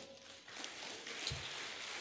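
Faint hall room tone in a pause between spoken sentences, with a single soft low thump just past a second in.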